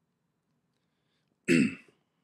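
Near silence, then a man clears his throat once, briefly, about one and a half seconds in.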